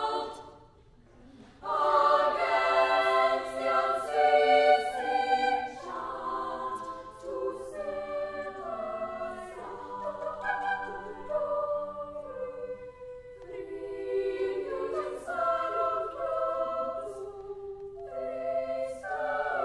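A girls' choir singing in several-part harmony, with no instruments evident. After a short break of about a second and a half at the start, the voices enter together loudly, then carry on with shifting chords.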